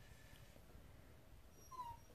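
A dog gives one short, high whimper near the end, falling slightly in pitch, against near silence.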